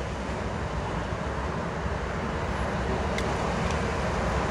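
Steady outdoor background rumble and hiss with a low hum, and a faint click a little after three seconds.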